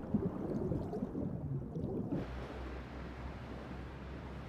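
A soft, low ambience, then about halfway through a steady hiss of wind and open sea with a constant low rumble underneath.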